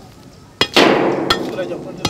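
Repeated blows of a long metal bar striking downward, about one every 0.7 seconds, each a sharp knock. After the blow about half a second in comes a louder rushing, scraping noise that fades over about a second.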